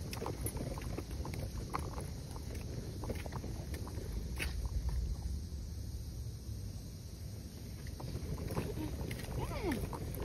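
Outdoor ambience: a steady low rumble, like wind on a phone microphone, with scattered faint clicks and handling noise and a faint voice now and then.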